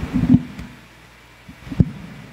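Dull thumps and knocks of a hand handling the lectern microphone: a cluster of low bumps at the start and one sharper knock near the end.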